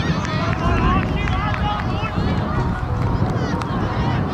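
Players and touchline spectators shouting and calling during a youth football match, many short high calls overlapping, over a steady low rumble.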